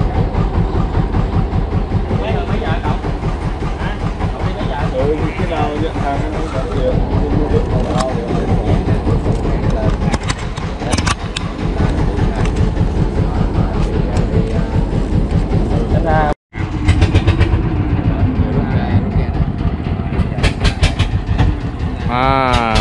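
A wooden river fishing boat's inboard engine running steadily, with a fast, even thumping beat. It cuts out for an instant about two-thirds of the way through, then carries on.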